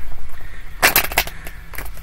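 Tarot deck being shuffled by hand: a quick run of sharp card-edge clicks about a second in, with a few more clicks near the end.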